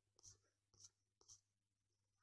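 Near silence: a faint low hum with a few very faint ticks about half a second apart.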